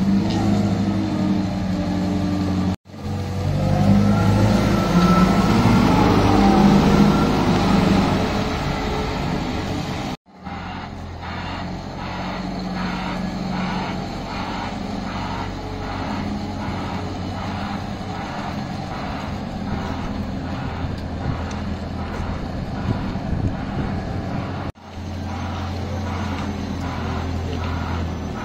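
Liebherr L556 XPower wheel loader's diesel engine running as the machine drives, its revs rising and falling in the first part. Through the middle a pulsing alarm sounds about once a second, typical of a reversing alarm. The sound cuts off abruptly three times.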